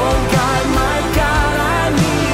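Live worship band playing: a sung melody over a drum kit with cymbals and steady low notes, with drum hits landing every half-second or so.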